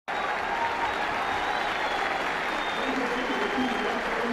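Football stadium crowd applauding steadily, a dense wash of clapping with some shouting mixed in.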